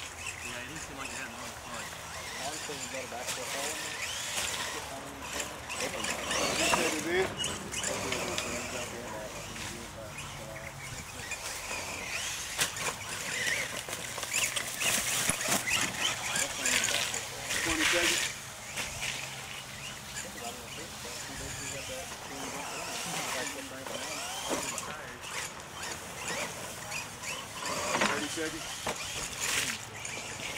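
Radio-controlled monster trucks driving and spinning their tyres through mud, with swells as the trucks rev and throw mud, under the voices of spectators talking.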